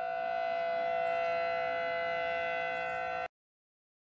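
Outdoor civil-defense warning siren sounding a steady tone that cuts off suddenly a little over three seconds in.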